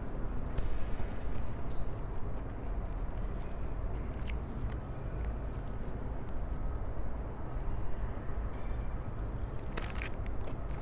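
A person chewing a mouthful of kimbap close to a clip-on microphone, with faint small clicks, over a steady low rumble.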